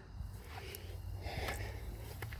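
Faint breathing close to the microphone, two soft breaths, over a low rumble of handling noise from a handheld phone.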